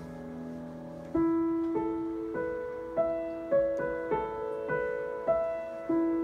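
Upright piano played slowly with the sustain pedal down. Held notes fade for about the first second, then single notes follow about every half second, each ringing on under the next.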